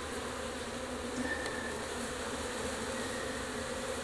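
Steady hum of a honeybee colony buzzing in an opened hive.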